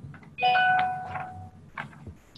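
A single chime, several bell-like tones struck together about half a second in and fading away over about a second.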